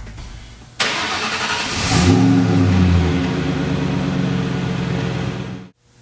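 A 2003 Ford Mustang Cobra's supercharged 4.6-litre V8 starting up. It cranks briefly about a second in, catches with a short rev, then settles into a steady idle that cuts off abruptly near the end.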